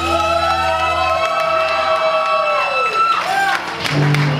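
Live rock band ending a song: electric guitars hold and bend a final chord over a low bass note that drops out a little over a second in. The held notes slide down and fade around three seconds in, then a new chord rings out at the end.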